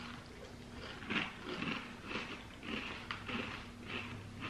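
Crunching of a mouthful of granola-like cereal of almonds, whole-grain flakes and seeds being chewed, a crunch about every half second.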